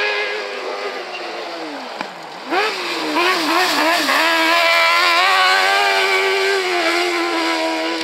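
Autocross buggy's engine revving hard. Its pitch falls about two seconds in, then rises and wavers with quick throttle changes as it gets louder and close, then holds high and steady.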